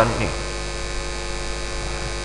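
Steady electrical mains hum carried through the microphone and sound system, running unchanged while the speech pauses.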